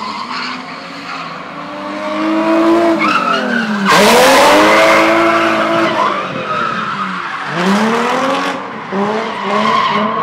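A drifting car's engine revving up and down over and over, with tyre squeal. The squeal is loudest from about four seconds in for a couple of seconds, followed by several quicker rev rises and drops.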